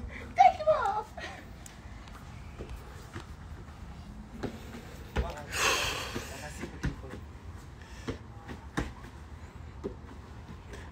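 A man's voice calling or laughing briefly near the start, then a low outdoor background with a few scattered short thumps and a louder breathy, rustling burst about halfway through.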